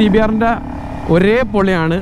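A man talking, with the single-cylinder engine of a Honda CBR250R motorcycle running steadily and faintly underneath while riding.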